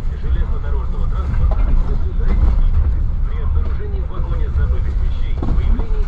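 Steady low rumble of a passenger train running at speed, heard from inside the carriage, with indistinct voices of people talking.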